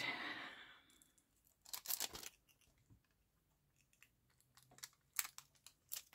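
Faint paper handling: a glued paper envelope pocket being slid and pressed onto a journal page, with soft rustling at first, a brief flurry of brushing strokes about two seconds in, and a few light taps and clicks near the end.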